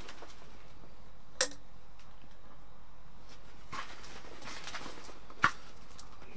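A camping kettle and plastic bowl being handled. A metallic clink comes about a second and a half in, then some rustling, and a sharper knock near the end, all over a steady low hiss.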